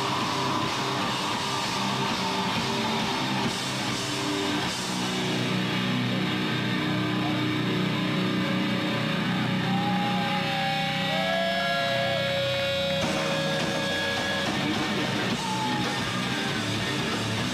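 Live grindcore band with distorted electric guitar, bass and drums. The drum and cymbal hits thin out after about five seconds, leaving held, droning distorted chords with a wavering feedback tone about ten seconds in.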